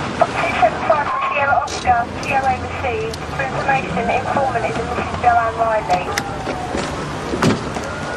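A police car driving up, its engine a low steady hum, with high-pitched voices calling out over it and a sharp knock near the end.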